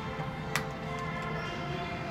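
Background music at a steady level, with one sharp click about half a second in.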